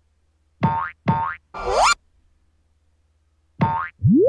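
Cartoon sound effects: three quick springy, pitched tones about a second in, the third sliding upward, then one more short tone near the end.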